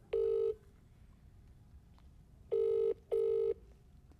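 Ringback tone of an outgoing phone call playing through a smartphone's loudspeaker: one short beep near the start, then a pair of short beeps close together about two and a half seconds in. It is the sign that the call is ringing at the other end and has not yet been answered.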